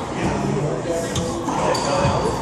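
Racquetball rally in a hard-walled court: a couple of sharp smacks of the ball about a second in, a brief high squeak near the end, and the hall's echo under low voices.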